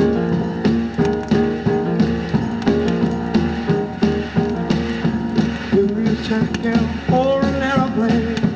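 Live 1970s rock band recording playing from a vinyl record: an up-tempo groove of keyboard, bass and drums with a steady beat.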